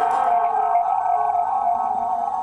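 A playground post ringing on in a steady, sustained tone after being struck, picked up by a contact microphone clipped to the post, slowly fading.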